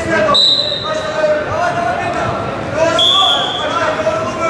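Referee's whistle blown twice, a short steady blast just after the start and another about three seconds in. The first restarts the bout. Shouting voices and chatter carry on underneath in a reverberant sports hall.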